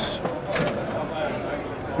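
Plastic faceplate of a solar inverter/charger cabinet being unclipped from its spring clips, with light clicks, under background voices.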